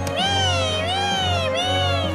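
A high, wordless voice-like tone that slides up and down three times in smooth arches, over the episode's orchestral background music.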